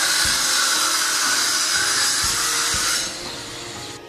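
A steady, loud hissing noise with a few faint low knocks under it, cutting off abruptly about three seconds in.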